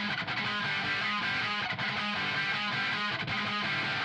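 Opening of a recorded rock song by a post-hardcore band: guitar playing a repeating riff, with no vocals yet, starting suddenly just before.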